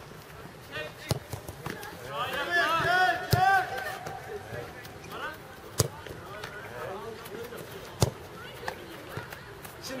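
A football kicked hard, a sharp thud about every two and a half seconds, four in all, the last two loudest.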